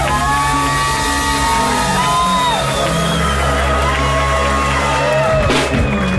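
Live rock band playing the closing bars of a song, with held low bass notes and electric and acoustic guitars. Whoops rise over the music, and a few sharp drum hits come near the end.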